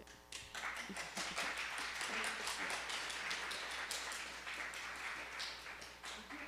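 Audience applauding: many hands clapping, starting about half a second in and thinning out near the end.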